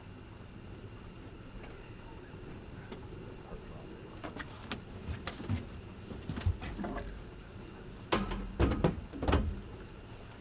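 Knocks and bumps of fishing gear against the boat as a landing net and rods are handled during a fish fight. A few light clicks come first, then a run of heavier thuds in the last two seconds.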